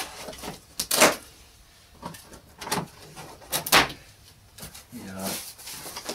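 Plastic packing strap being worked off a cardboard box: about five sharp snaps and scrapes spread through a few seconds, as the strapping is pulled loose against the carton.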